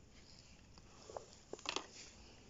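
Faint handling of Pokémon trading cards: a few soft ticks and rustles as the cards are shuffled in the hands, mostly in the second half.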